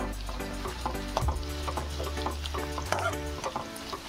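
A metal spatula scraping and clinking against a metal kadai as sliced onions are stirred and sautéed in hot oil, with a light sizzle of frying. Background music with a steady low note plays underneath.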